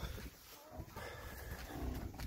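Cattle lowing faintly, two short calls in the barn, over a low rumble from the phone microphone being moved.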